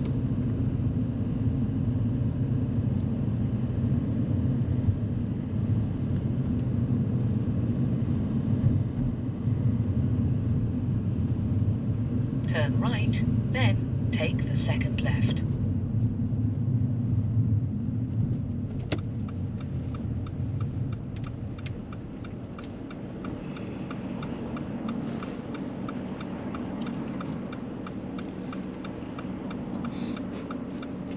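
Car interior with steady engine and road rumble while driving, dying away as the car slows to a stop about two-thirds of the way in. A click follows, then the turn-signal indicator ticks steadily at about two ticks a second.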